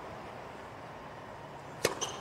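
Low stadium hush, then a single sharp tennis ball impact near the end.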